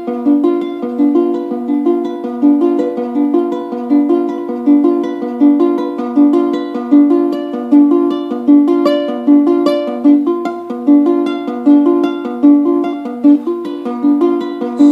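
A ukulele fingerpicked in a steady, repeating pattern of plucked notes, played solo without singing.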